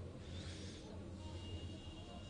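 Faint match-broadcast background: a steady low hum, with a brief soft hiss about half a second in and a thin faint high tone after that.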